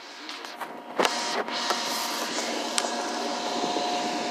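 A small electric motor running steadily with a constant whine, with a few short knocks about a second in and again near three seconds.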